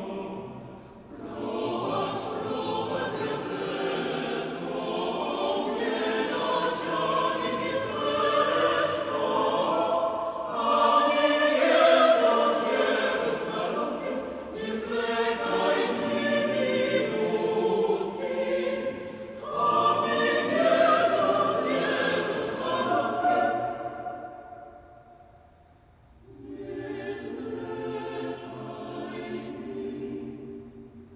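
Mixed choir singing a Polish Christmas carol in long, swelling phrases. Near the end the singing dies away almost to silence, then a softer phrase begins.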